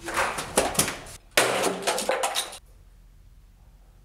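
Two loud bursts of knocking and rattling from a wooden door being opened, cut off suddenly about two and a half seconds in, leaving quiet room tone.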